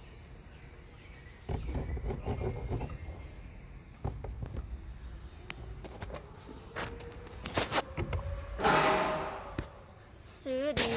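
Close rustling and knocking as a chimpanzee's fur and hands brush against a phone's microphone, with scattered sharp clicks and a louder rushing noise near the end.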